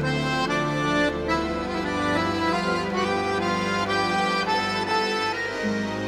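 Instrumental music: a slow melody of held, reedy notes over sustained bass and chords.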